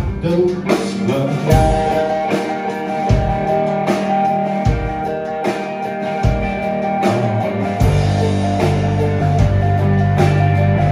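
Live rock band playing an instrumental passage: electric guitars with held notes over bass guitar and a drum kit. The bass and low end get fuller about eight seconds in.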